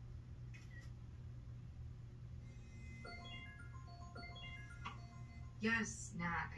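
Film soundtrack playing over a low steady hum: from about halfway in, a slow melody of soft held notes, with a voice starting near the end.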